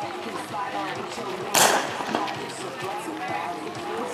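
A single starting-pistol shot about one and a half seconds in, the loudest sound here, sending off a race, over the voices of spectators and athletes at the start line.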